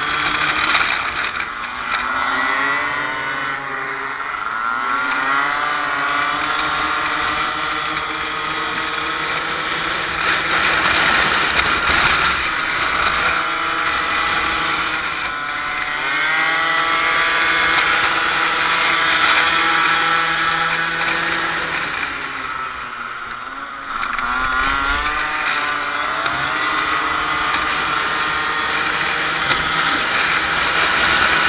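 Several 50 cc Kymco racing scooters running flat out in a pack, close up from a helmet camera. Their engine notes rise and fall as the riders ease off for corners and open the throttle again, several pitches overlapping as they race side by side.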